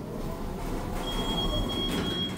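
Kone hydraulic elevator's doors sliding open with a low rumble. About a second in, a steady high-pitched whine starts and holds.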